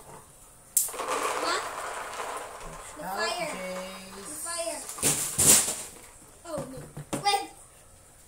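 Roasted peanuts poured from a frying pan into a plastic container, a sudden rattling rush of nuts that lasts about two seconds, followed by a few sharp knocks about five seconds in. A child's voice comes in between.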